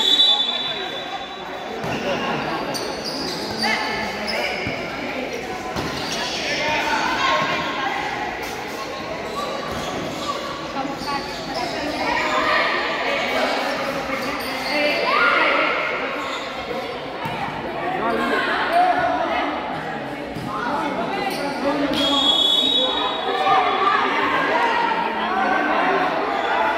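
Futsal ball being kicked and bouncing on a hard indoor court, with players and spectators shouting in a large, echoing gym. Short referee's whistle blasts sound right at the start and again a few seconds before the end.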